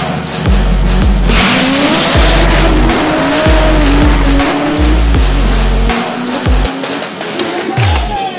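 Front-wheel-drive Honda Civic hatchback drag car launching and accelerating down the strip, its engine climbing in pitch in steps as it shifts through the gears. Loud music with a heavy bass beat plays over it for most of the run.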